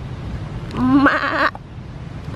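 A goat bleating once, a quavering call just under a second long that starts low and jumps higher, midway through.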